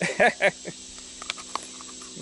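A man's brief chuckle, then a few faint clicks and light handling as a small plastic power bank is slid into a cardboard toilet-paper tube, over a steady faint high-pitched hum.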